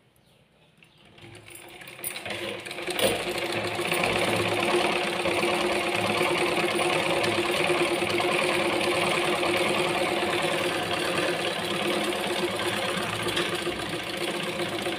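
Black domestic sewing machine stitching through cloth: it starts up about a second in, builds up over the next few seconds with one click along the way, then runs steadily.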